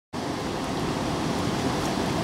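Steady rushing noise of river water and wind, cutting in just after the start.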